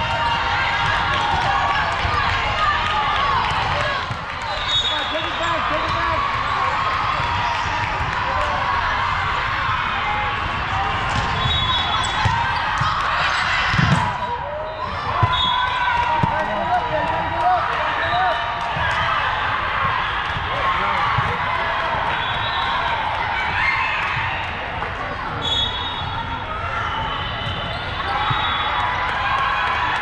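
Busy indoor volleyball hall: a steady din of many voices calling and chattering, with volleyballs being struck and bouncing on hardwood floors as play goes on, and a louder thud about fourteen seconds in.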